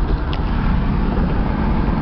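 Steady road noise heard from inside a car moving at highway speed: a low rumble with a hiss over it.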